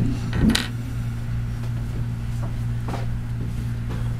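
A few light metallic clinks from a metal sewing-machine binder attachment being handled, the loudest about half a second in, over a steady low hum.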